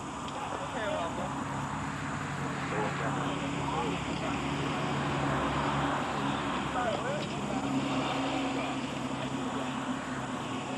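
Crowd chatter with a steady engine drone underneath that comes in about a second in and holds to the end, a little louder in the middle.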